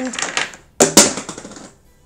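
Two sharp plastic clacks about a fifth of a second apart, from makeup packaging being handled: a carded blister pack of liquid eyeliners picked up, with a brief rattle after it.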